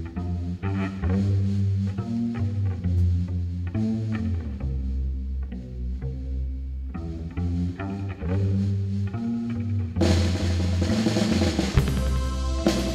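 Live psychedelic rock band playing an instrumental passage: electric guitar picking over sustained bass notes. The drum kit and cymbals come in about ten seconds in, filling out the sound.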